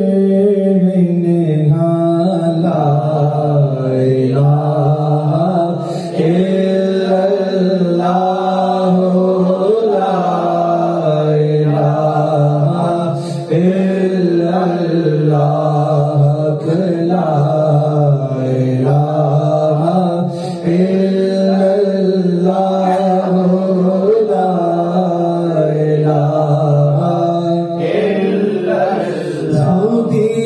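Men's voices chanting devotional Sufi zikr together in a continuous melodic chant of repeated phrases, with short pauses for breath about every seven seconds.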